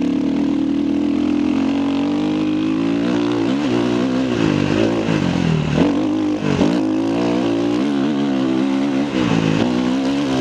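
KTM 350 EXC-F single-cylinder four-stroke enduro engine running under way, holding a steady pitch for the first couple of seconds, then rising and falling again and again as the throttle is opened and closed.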